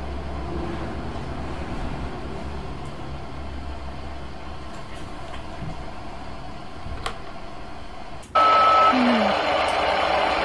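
A low steady hum with a single click, then about eight seconds in a short high beep and a sudden loud burst of radio static that carries on.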